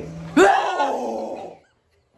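A loud, sudden cry about half a second in, rising and then falling in pitch and lasting about a second.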